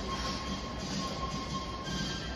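Steady background noise of an indoor ice rink: a low hum under an even hiss, with a faint thin high tone.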